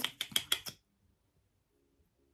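About half a dozen sharp plastic clicks in under a second as a brow-gel wand is pulled out of and worked in its tube.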